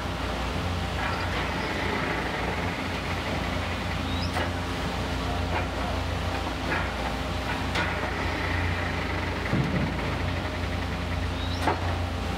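Diesel engine of a long-reach demolition excavator running steadily as it tears into a building, with a few sharp cracks of breaking material, the loudest near the end.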